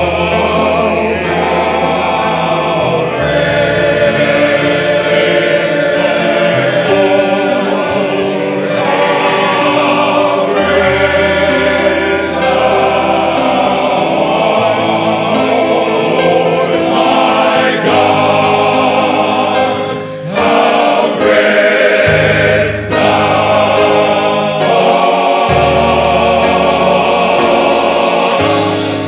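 Men's gospel choir singing in full harmony over accompaniment with long held bass notes that change every few seconds, with a brief break in the sound about twenty seconds in.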